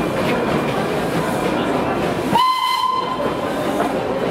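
Darjeeling Himalayan Railway steam locomotive hissing steadily as it pulls out. Just past halfway it gives one short whistle blast, a steady single note lasting under a second.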